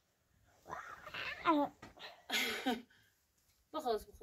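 A person's voice making two short, rough vocal sounds, about a second in and again midway.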